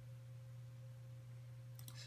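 Faint, steady low electrical hum with a thin higher tone held throughout, and a few light clicks shortly before the end.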